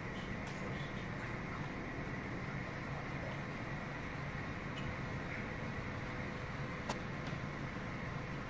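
A model passenger train running slowly along its layout track, a steady low hum and hiss over the room's ventilation noise, with a sharp click near the end.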